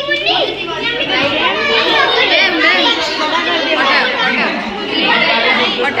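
A crowd of children chattering and calling out all at once, many high voices overlapping without a pause.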